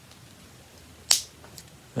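A single short, sharp click about a second in, with a fainter tick after it, from fingers working the end of a plastic NeoPixel lightsaber blade to peel back its foam and diffusion layers. Otherwise quiet room tone.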